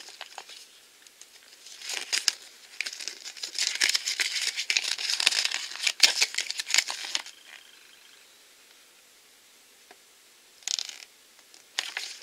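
Paper checklist leaflet and blind-pack packaging crinkling and rustling as they are unfolded and handled, in a dense run of a few seconds, then a lull and one brief rustle near the end.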